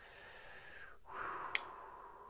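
A man breathing out twice, long and airy, after admiring the knife. About one and a half seconds in comes a single sharp click as the folding knife's blade is closed.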